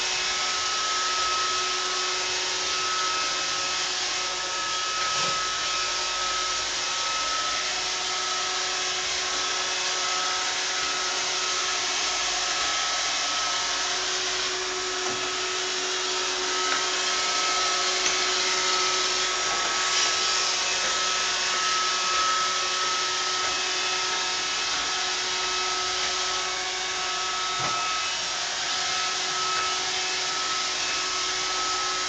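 iRobot Roomba robot vacuum running on hard tile: a steady whine with a high hum over the hiss of its suction and brushes, with a few faint ticks.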